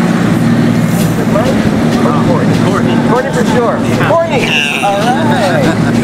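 Distant, overlapping voices over a steady low motor hum.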